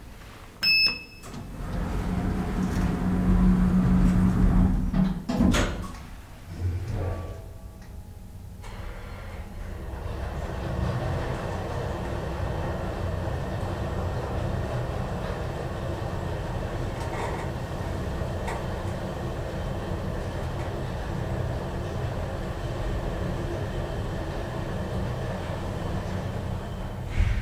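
Elevator car of a Deve-Schindler traction lift modernized by TM Hiss. A short electronic beep sounds about a second in, then the car doors slide shut with a humming door motor, ending in a knock about five seconds in. After that the car travels down between floors with a steady low rumble and hum.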